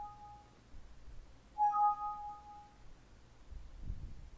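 Windows system alert chime, a two-note rising ding played as a warning dialog pops up. The tail of one chime rings at the start, and a second chime sounds about a second and a half in.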